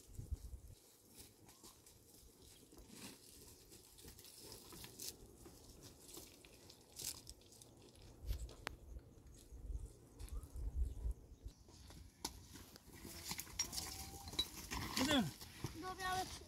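Footsteps crunching and scuffing on stony ground, faint and irregular, with low wind rumble on the microphone for a few seconds in the middle. Near the end a few short calls rise and fall in pitch.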